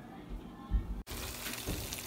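A few faint low bumps, then after a sudden cut about halfway through, diced vegan chick'n pieces in teriyaki sauce sizzling in a frying pan with a steady hiss.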